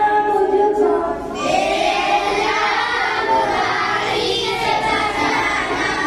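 Children singing together without words being spoken, the sound growing fuller and brighter about a second in.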